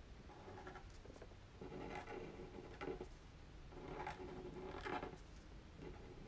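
Fine-tip pen drawing short strokes on paper: faint scratching in about half a dozen brief strokes with pauses between them.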